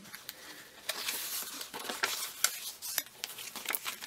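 Paper handling on a handmade junk journal: pages and a fold-out insert rustling as they are turned and unfolded, with a scatter of small clicks and taps.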